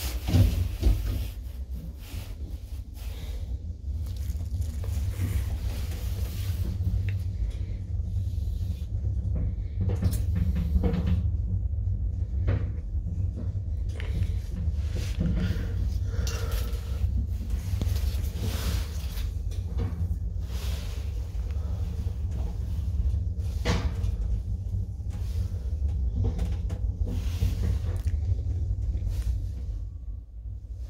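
Sema traction elevator car travelling: a steady low rumble from the ride, with a loud knock about half a second in and scattered clicks and knocks from the cab along the way.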